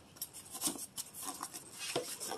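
Cardboard collector boxes being handled and worked open by hand: faint rustling and scraping of cardboard with small scattered taps.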